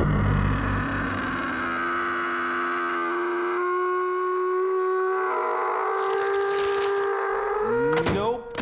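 A cartoon lemon child's long, held scream on one high note that rises slightly in pitch, after a low rumble in the first second.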